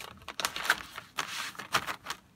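A stack of paper envelopes being flipped through by hand: a quick, irregular run of dry papery flicks and rustles.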